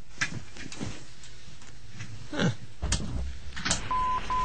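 Studio microphones not live: the presenters' voices come through only faintly off-mic, with a short "huh". Two sharp clicks come in the last second or so, with a low rumble under them.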